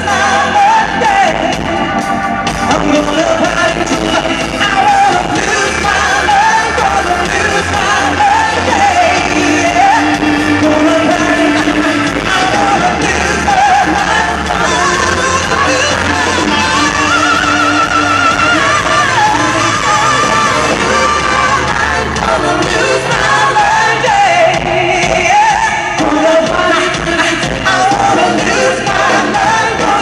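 Male lead singer singing live with a pop-rock band of electric guitar, drums and keyboards, the sung line wavering with vibrato over a steady, dense band sound.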